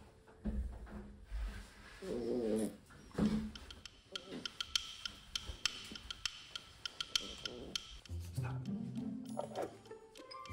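A puppy whimpering in a few short, wavering whines in the first few seconds, then background music with a stepping bass line coming in about eight seconds in.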